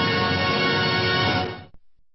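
Closing soundtrack music holding a full sustained chord, which fades and cuts off about three-quarters of the way through.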